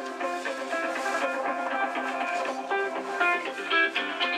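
Mobile phone ringing with a guitar-music ringtone: a plucked guitar melody of pitched notes at a steady level.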